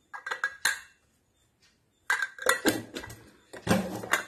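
A stainless steel pressure cooker lid being fitted onto its pot and closed: metal clinking and scraping in a short burst near the start, then a longer run of clattering from about halfway through.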